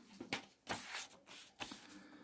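A sheet of paper being picked up and laid over an open spiral notebook, giving a few brief, faint rustles of paper handling.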